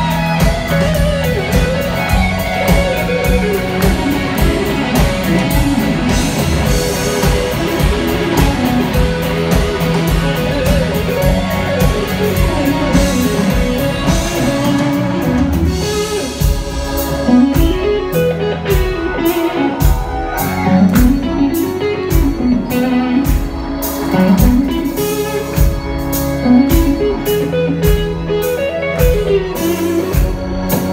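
Live blues-rock band playing: an electric guitar leads with bending, sliding notes over bass guitar, drums and keyboards. About halfway through, the backing thins to a lighter, sparser beat while the guitar keeps playing.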